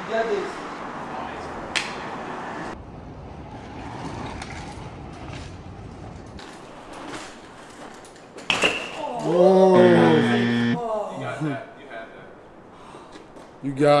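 A BMX bike clattering down onto concrete as the rider bails off a ledge, one sharp impact, followed straight away by loud shouting from men's voices.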